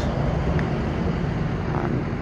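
Blower-equipped 8V71 two-stroke V8 diesel engine of a 1956 Greyhound bus idling with a steady low drone.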